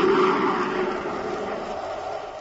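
Radio-drama rocket-engine sound effect: a steady rushing noise over a low hum, fading gradually away.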